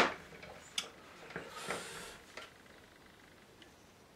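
Handling sounds at a painting easel: one sharp knock at the start, then a few lighter taps and a short scratchy rustle, then quiet.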